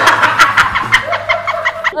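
Two women laughing hard together in a fast run of breathy bursts.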